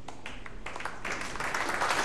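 Audience applause: a few scattered claps at first, swelling into fuller clapping about a second in.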